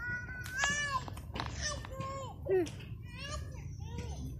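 Children shouting and squealing in a string of short, high-pitched calls that swoop up and down in pitch, over a steady low rumble.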